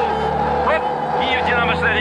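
A song: a voice holds a long note that slides slightly down and ends right at the start, then begins a new phrase about a second later, over a steady instrumental drone and low hum.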